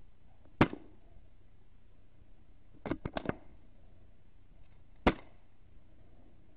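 Two sharp air rifle shots, about four and a half seconds apart, with a quick cluster of three or four softer clicks between them.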